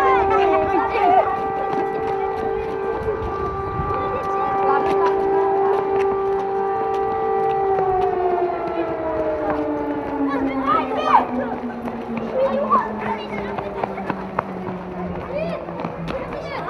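Civil defence siren sounding a steady tone, its pitch then falling slowly from about halfway through as it winds down.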